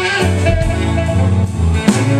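Live band playing an instrumental break of a slow blues ballad: electric guitars over bass, keyboard and drums, with one sharp drum or cymbal hit near the end.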